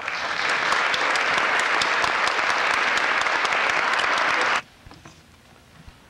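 Audience applauding after a school concert band's piece. The applause starts right away and cuts off abruptly about four and a half seconds in.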